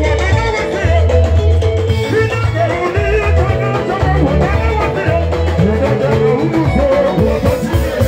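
Live dance band playing an upbeat African popular song, with a heavy pulsing bass line, guitar and singing.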